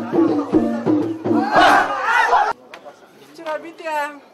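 Tifa hand drums beating about three strokes a second under a group of voices singing, rising into a loud crowd shout. The sound cuts off suddenly about two and a half seconds in, leaving a quiet voice.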